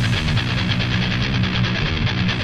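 Heavy metal song in a quieter break where the full band drops away and an electric guitar plays a fast, evenly picked rhythm.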